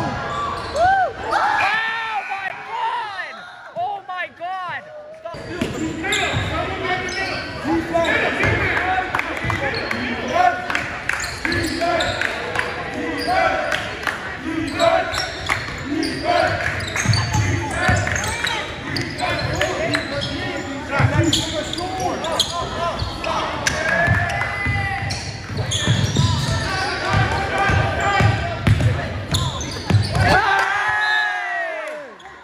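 Basketball game on a hardwood gym floor: a basketball bouncing and dribbling in repeated sharp knocks, sneakers squeaking in short glides, and players' voices calling out, all echoing in the large gym.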